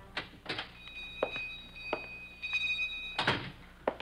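Radio-drama sound effects of a door: a few light clicks and knocks, a steady ringing of two high tones for about two seconds, then a louder knock as the door shuts about three seconds in.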